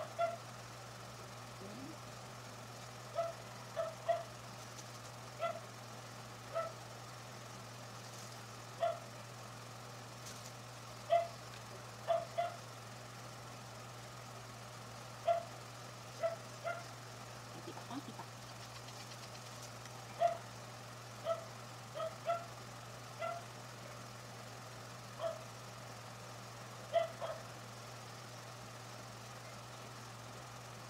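A dog barking in short single barks, some in quick pairs, every second or two at irregular intervals, over a steady low hum.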